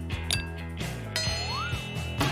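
Two bright ding sound effects over light background music, the first about a quarter second in and the second just after a second in. The second rings with several high tones and a short whistle that rises and falls.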